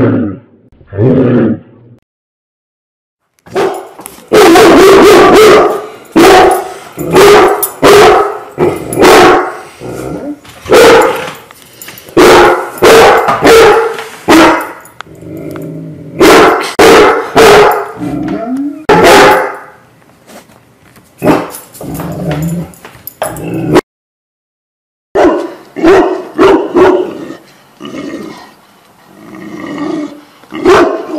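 Large dogs barking in loud, deep, repeated barks. A Landseer gives a couple of barks near the start. After a short pause a Leonberger barks steadily for about twenty seconds, and after a second brief break more barking follows near the end.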